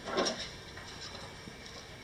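Folding metal RV entry step being lifted from the doorway and swung out: a brief rattle about a quarter second in, then quiet handling against the room's background.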